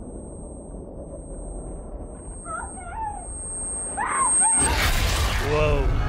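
Action-movie trailer sound: a low rumble with faint voices calling out, then, about four and a half seconds in, a sudden loud burst of chaotic destruction noise with people shouting over it.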